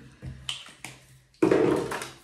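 A few light clicks and taps from small objects being handled on a bathroom counter, two or three sharp ones within the first second, followed by a short spoken word.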